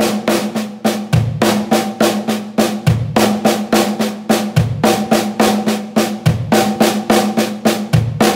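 Snare drum played in an even stream of single strokes, about six a second, with a bass drum kick about every 1.7 seconds. It is a repeating gospel chops lick with the sticking right, left, right, left, left, kick, played slowly.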